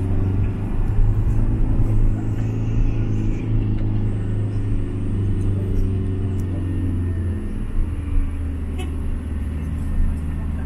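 Cabin noise of a passenger van being driven: a steady low engine and road drone with tyre noise, heard from inside. The drone eases slightly about seven seconds in.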